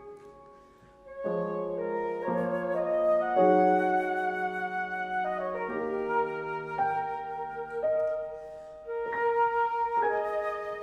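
Flute and grand piano playing a slow chamber-music passage. After a brief hush, sustained chords enter about a second in and shift every second or so.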